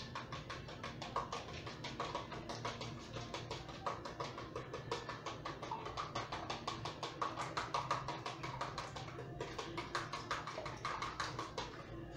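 A utensil beating quickly in a small plastic bowl, a rapid run of taps several a second with a short pause about three-quarters of the way through.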